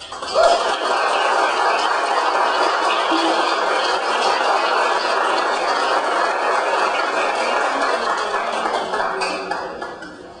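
Audience applauding, starting abruptly and holding steady, then dying away at the very end.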